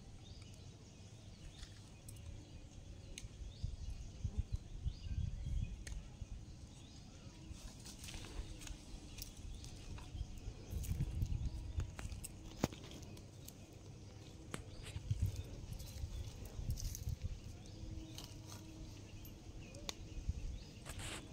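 Small wood fire being lit and fed with dry sticks: scattered snaps and crackles over a low, uneven rumble that swells and fades several times.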